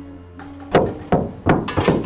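Knocking on a wooden door: several heavy knocks in quick, uneven succession, starting under a second in. Soft background music fades out behind them.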